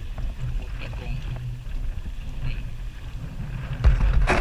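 Small boat under way in rough sea: a steady, wavering low engine drone with wind on the microphone, and a heavy thump near the end as the hull slams into a wave.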